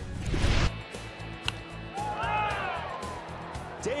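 A broadcast graphics transition sting: a short whooshing sweep with a heavy low hit, lasting under a second and cutting off abruptly. It is followed by quieter game-broadcast background with a few brief sliding tones.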